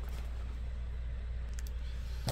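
Quiet room tone with a steady low hum, and a few faint clicks and rustles of items being handled about one and a half seconds in.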